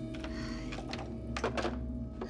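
Telephone handset being hung up on its desk-phone cradle, giving a few short plastic clunks, over a steady music underscore.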